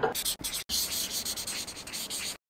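A dry, scratchy rubbing sound: a few quick strokes in the first half second, then a steady hiss, like a pen or sandpaper scratching.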